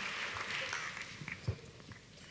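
Congregation applause fading away, with a single soft thump about one and a half seconds in.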